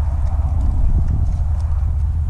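Wind rumbling steadily on the microphone, with faint irregular clicks from a pig rooting and chewing through lettuce scraps.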